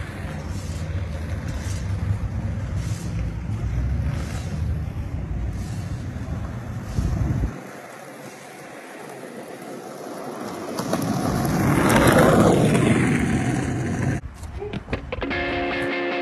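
A steady low vehicle rumble that stops abruptly partway through, then a whoosh like a vehicle going by, rising to a peak and cutting off suddenly. Guitar music starts near the end.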